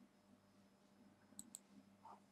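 Two faint, quick computer mouse clicks about a second and a half in, over near silence: the click that opens a dropdown list.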